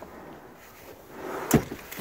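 Second-row seat of a 2021 Honda Pilot folding forward after its release button is pressed: a rustling movement that builds, then one sharp thump about one and a half seconds in.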